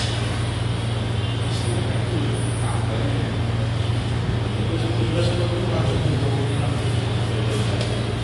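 Steady low hum of room noise with faint background voices, broken by a few soft clicks.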